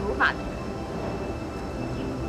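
A woman's last spoken word, then a steady low rumble of background noise with faint steady high tones above it.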